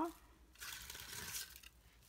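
Silver metallic shredded cardstock filler crinkling faintly as it is handled and pressed down into a small cardboard gift box.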